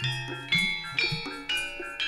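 Javanese gamelan music: bronze metallophones are struck about twice a second, each note ringing on over a low sustained tone.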